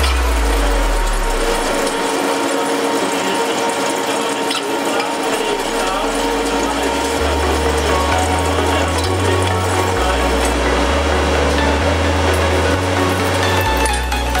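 Electronic background music whose stepped bass line comes in about halfway through, over the steady machine noise of a wheel lathe's tool cutting the tread of a locomotive wheel.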